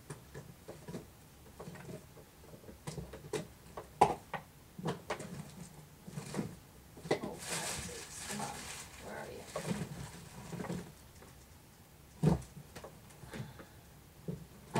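Hands rummaging through craft supplies while searching for a jar of gesso: scattered knocks, clicks and rustling as containers are picked up and set down, with a sharp knock about four seconds in and a thump near the end.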